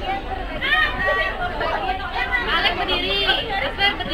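Chatter of many overlapping voices, mostly young children's high voices, talking and calling out at once.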